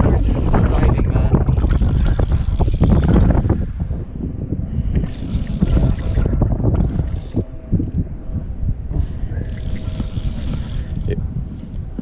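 Wind buffeting an open-air camera microphone: a loud low rumble with a few short bursts of higher hiss.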